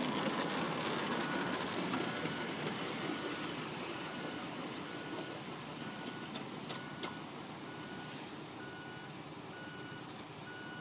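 One-third-scale live-steam locomotive running away along its track, its noise fading steadily as it goes. Under it a short, high beep repeats about once a second.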